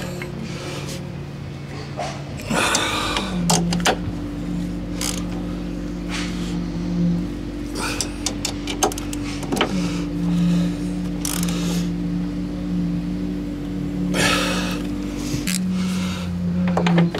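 Ratchet wrench clicking in short spells as the front strut top-mount nuts on a Mercedes-Benz W211 are tightened, over a steady low hum with a pulsing tone in it.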